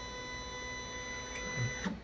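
Stepper motors of a Stepcraft M.1000 CNC router whining steadily as they lower the spindle onto a holder in the automatic tool changer's rack. The whine stops just before the end.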